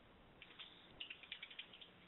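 Near silence on a telephone call-in line, with faint, scattered clicks and crackle starting about half a second in.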